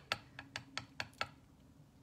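A quick run of about six light clicks or taps from handling a makeup brush and powder jar, dying away after the first second or so.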